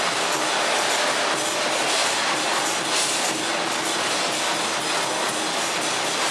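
Loud, dense temple-procession percussion music, a steady wash of clashing cymbals and drums.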